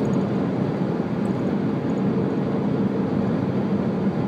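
Steady road and engine noise inside a moving car's cabin, an even low hum.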